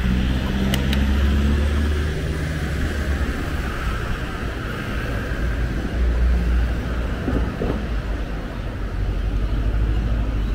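Road traffic passing close by: cars and a van going past with a steady rumble of engines and tyre hiss. An engine hum with a clear pitch stands out in the first couple of seconds, and there is one sharp click about a second in.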